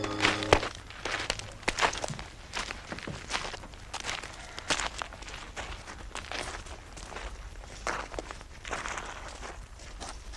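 Footsteps crunching on gravel: slow, uneven steps of one person walking across stony ground. A music cue ends about half a second in.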